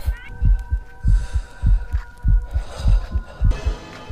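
Background music: a deep thumping beat about twice a second under held, steady tones.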